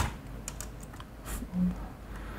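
Computer keyboard keystrokes while editing code: one sharp click, then a few lighter, scattered key taps.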